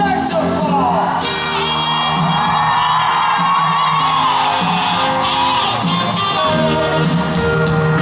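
Live pop band playing, with a saxophone solo carrying the melody over the band.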